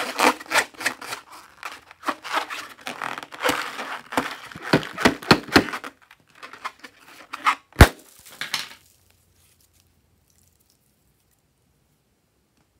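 Hands squeezing and rubbing a filled rubber balloon: a busy run of crackles, clicks and rubber squeaks, then a few more and one sharp, loud snap, after which the sound stops dead for the last few seconds.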